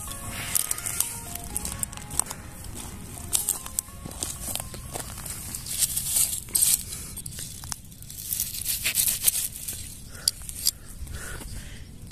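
Dry grass and stems rustling and crackling as mushrooms are cut from the ground with a pocket knife, under background music.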